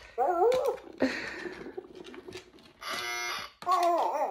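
Electronic dog-shaped skill game going off as the wand touches the edge, playing short recorded dog whimpers and howls whose pitch bends up and down, with a steady electronic tone about three seconds in.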